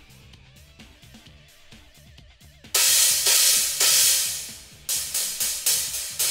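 A stack of two Meinl crash cymbals, a 16-inch Classic Custom Medium Crash sitting flush on a larger crash, struck once a little under three seconds in and left to ring for about two seconds. It is then hit several times in quick succession near the end, giving short, clean, controlled stacked crashes. Faint background music plays before the first hit.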